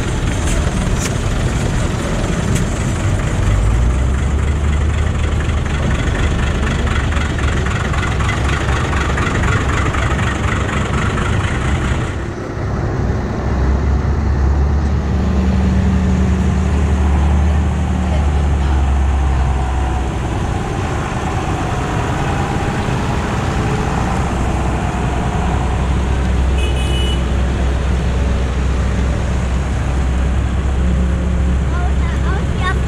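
Diesel engines of farm tractors running as they drive past one after another, a steady low drone with a brief drop about twelve seconds in.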